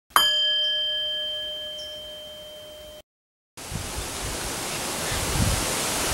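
A single struck bell-like chime rings out and fades slowly over about three seconds, then cuts off. After a brief silence comes a steady outdoor hiss with low rumbles.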